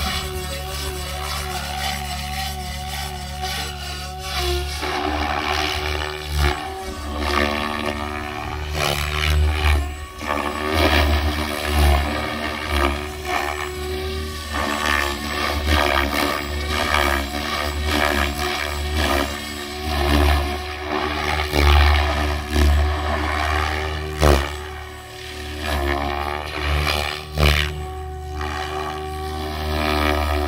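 Electric 700-size RC helicopter flying aerobatics: a steady high motor and gear whine over the rotor blades' whoosh, its pitch shifting and its level surging and dropping every second or two as the blades are loaded through manoeuvres.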